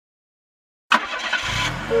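Cartoon car sound effect: an engine bursts into life about a second in and settles into a low running hum, with a steady horn beep starting near the end.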